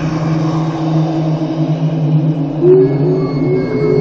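A low, steady drone from a horror soundtrack, made of two held low tones. About two-thirds of the way in, a higher tone joins and wavers and slides in pitch.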